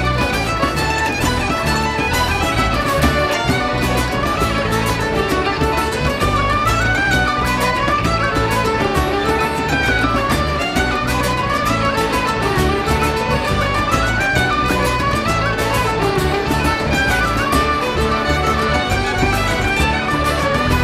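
Irish traditional band playing a fast instrumental dance tune: the fiddle leads the melody over accordion and strummed acoustic guitar, with a steady driving beat.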